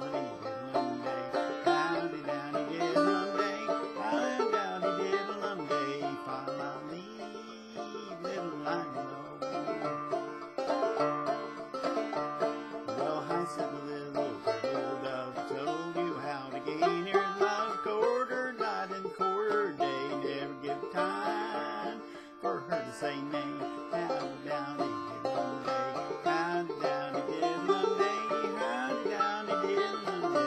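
Banjo played steadily as a folk-song accompaniment, with a man's voice singing along beneath it.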